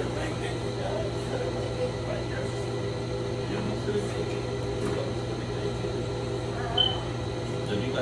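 A steady machine hum, with faint voice sounds and a brief high squeak about seven seconds in.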